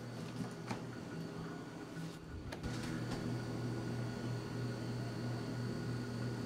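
Refrigerator freezer running with a steady low hum; the freezer door opens with a few clicks about two seconds in, and the hum is louder after that. The fan runs smoothly with no rattle, a sign that the ice that had built up around the freezer fan has been cleared.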